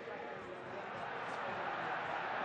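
Stadium crowd noise under a football broadcast, a dense steady roar that swells slightly as a player breaks forward with the ball.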